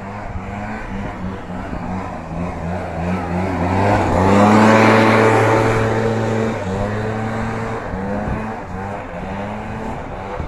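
Small petrol engine of lawn-care equipment running steadily, its pitch wavering, growing louder about four to six seconds in as it comes close, then easing off.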